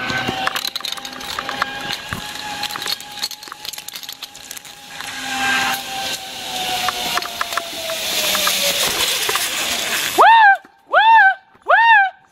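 Zipline trolley running along the steel cable: one long whine that rises a little and then sinks and fades over about nine seconds, with clinks and knocks from clips and the wooden platform. About ten seconds in come three loud calls, each rising and falling in pitch.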